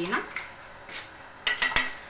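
Metal spoon clinking against a glass and a yogurt pot as yogurt is spooned into a glass of milk, with three quick sharp taps about one and a half seconds in.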